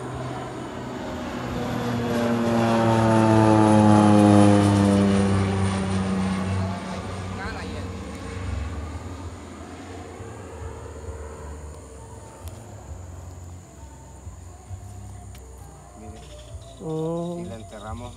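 A propeller aircraft flying overhead: its engine drone swells to a peak about four seconds in, its pitch falling steadily as it passes, then fades away.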